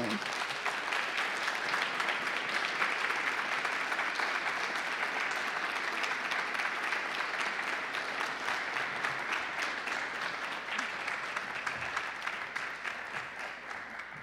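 Audience applauding, many hands clapping steadily, then thinning out near the end.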